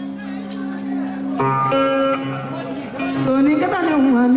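Live band music with plucked guitar: steady held notes give way to changing chords about a second and a half in, and a voice slides in near the end.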